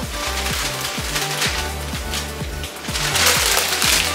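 Background electronic music with a steady beat, over the crackling rustle of an iron-on transfer's backing paper being peeled off a T-shirt, loudest near the end.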